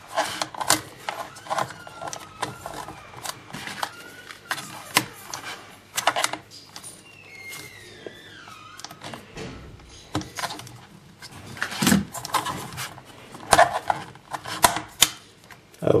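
Irregular clicks, taps and scrapes of fingers and nails on the plastic memory-bay cover and case of an Asus 1015B netbook as the stuck cover is worked loose. There are louder knocks about twelve seconds in and just before the cover comes free near the end.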